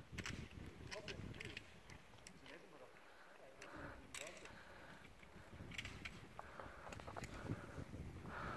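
Scattered light clicks and knocks of boots and stones on rocky scree, faint over quiet mountain air.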